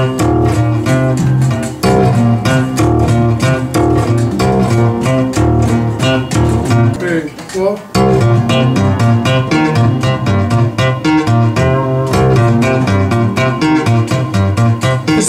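A multi-string touch-style tapping instrument of the Chapman Stick type, played with both hands tapping on the fretboard. A steady bass line runs under quick tapped melody notes, with a short break about seven and a half seconds in before the playing starts again.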